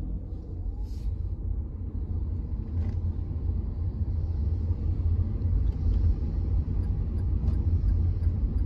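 Low rumble of a car driving on a wet road, heard from inside the cabin, growing louder as it gets under way, with a faint hiss of tyres on the wet asphalt building after about two seconds. A short click about a second in.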